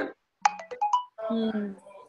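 A brief electronic ringtone of a few short tones at different pitches, with sharp clicks, about half a second in, then a moment of a voice over the call.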